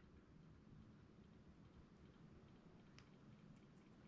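Near silence: room tone, with one faint click about three seconds in.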